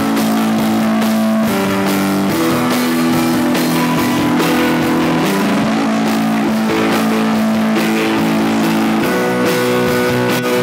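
Live rock band playing an instrumental passage with drums, keyboard and guitar, no singing: sustained chords held for a second or two at a time before changing, over a steady drum beat with cymbals.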